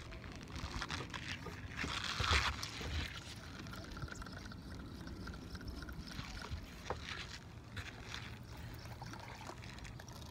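Quiet lakeside ambience: a steady low rumble of wind on the microphone with faint water sounds. A brief rustle about two seconds in and a small click near seven seconds.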